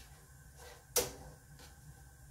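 A single sharp clack of a cooking utensil striking a frying pan about a second in, over a low steady hum.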